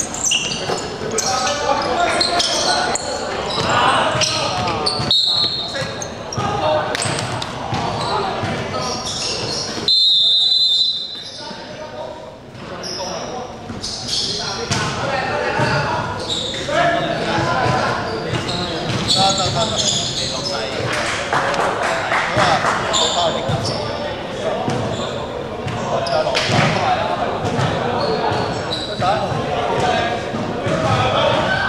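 Referee's whistle in a basketball game: one short blast about five seconds in and a louder one of about a second at around ten seconds, after which play stops. Around it, indistinct players' voices and a basketball bouncing echo through a large gym hall.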